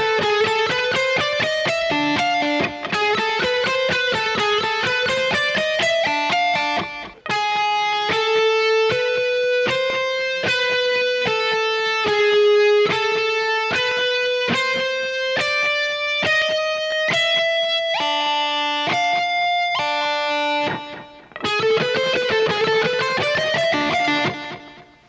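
Electric guitar, a Kiesel DC700 seven-string tuned a whole step down and played direct through a Kemper profiler, playing a single-note alternate-picked lick. It opens with a quick run of notes climbing and falling, then the notes are picked slowly one at a time, about two a second, and a quick run returns near the end.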